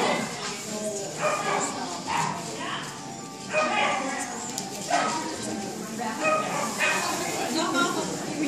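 A dog barking and yipping in short repeated bursts, roughly one a second.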